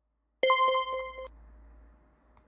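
A bright ringing ding tone starts about half a second in, pulsing rapidly, and is cut off abruptly under a second later, leaving a faint steady lower tone and hiss that fades away.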